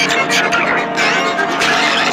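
Loud, chaotic mash-up of several audio tracks playing over one another: music, voices and car sounds all at once.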